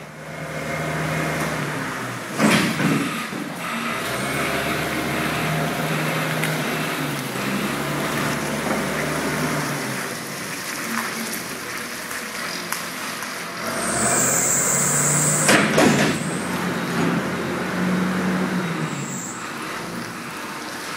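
John Deere 544 wheel loader's diesel engine running at varying revs, with two loud bangs, about two and a half seconds in and again near sixteen seconds, and a short hiss about fourteen seconds in.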